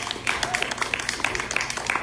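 Audience applauding with scattered, irregular hand claps.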